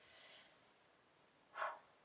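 Faint breathing by a woman: a soft hiss of breath at the start, then a short, louder breath about a second and a half in.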